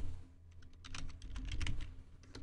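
Typing on a computer keyboard: a quick, uneven run of keystrokes beginning about half a second in, as a folder name is typed.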